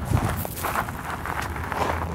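Loose pea gravel crunching and shifting, uneven and rough, with a low bump at the start.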